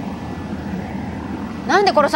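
A steady machine drone, the background hum of a sci-fi lair in a 1990s tokusatsu TV drama. A line of Japanese dialogue starts near the end.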